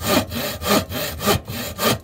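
A handsaw cutting wood: a rapid run of rough back-and-forth strokes, about four a second.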